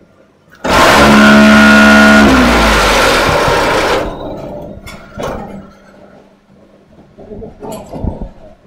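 MAC 1400 concrete block machine's mould vibrators starting suddenly with a loud, harsh, steady buzz as the punch plate presses down to compact the concrete mix. The pitch sags slightly before the buzz cuts off about four seconds in, leaving quieter clanks and a faint machine hum.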